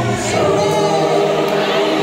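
Gospel choir singing, holding long sustained notes after a brief change of chord just after the start.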